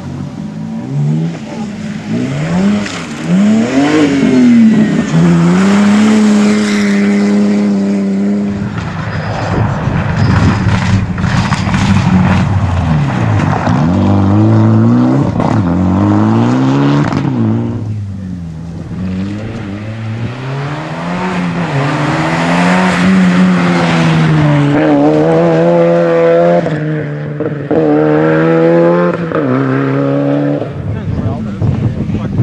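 Rally car engines revving hard, the pitch climbing and dropping again with each gear change as the cars accelerate and brake past, in several passes cut together. A run of sharp cracks comes about ten seconds in.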